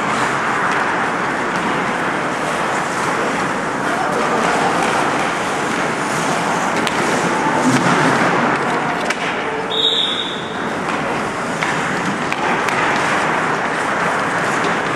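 Ice hockey skates scraping and gliding on rink ice, heard as a steady hiss of noise. A short high tone sounds about ten seconds in.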